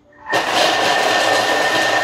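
Thermomix food processor running its blade at speed 5 for about two seconds, chopping carrot finer toward a grated texture. A loud, steady whirring with a high whine in it starts about a third of a second in.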